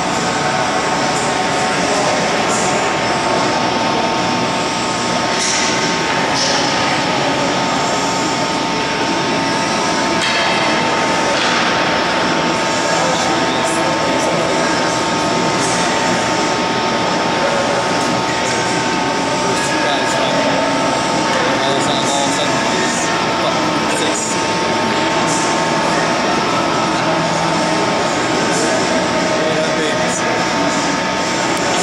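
Steady ice-arena background noise: a constant rush with a faint held hum tone, indistinct voices, and scattered brief high ticks and scrapes.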